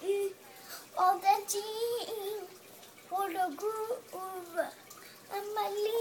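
A young child singing a made-up song in a high voice: several short phrases with some notes held and bending in pitch, and brief pauses between them.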